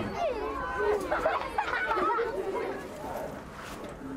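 Children's voices chattering over one another, no single clear voice, dying down somewhat near the end.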